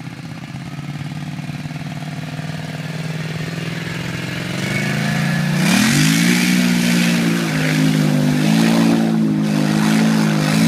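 Polaris Scrambler 850 ATV's twin-cylinder engine running at low revs, then revving up about halfway through as the quad ploughs into a water hole. From that point, water splashing and spraying sounds over the engine, which holds a higher steady pitch.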